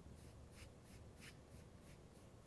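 Faint, rhythmic swishing of hands rubbing kinesiology tape down onto bare skin, about three strokes a second.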